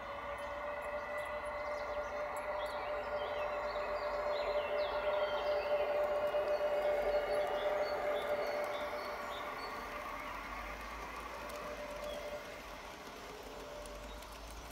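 Garden-railway model of an E 03 electric locomotive running past with its coaches: a steady motor and gear whine over the rolling of wheels on the track, growing louder to a peak about halfway through, then fading as it moves away. Birds chirp in the background.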